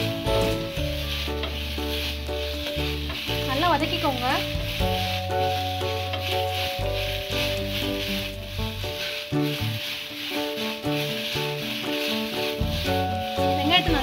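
Sliced onions sizzling in hot oil in a steel kadai, stirred and turned with a wooden spatula. Instrumental background music plays along throughout.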